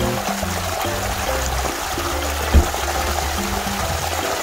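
Background music with held low bass notes over the steady rush of running stream water, with one short low thump about halfway through.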